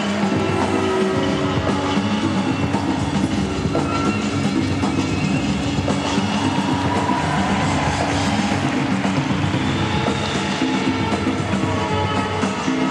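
Loud exhibition program music with a steady rhythmic drive, played over an ice arena's sound system for a skating routine.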